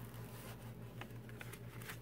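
Faint handling of a diamond painting canvas's plastic cover paper being peeled back from the sticky canvas: a few small ticks and a soft rustle over a steady low hum.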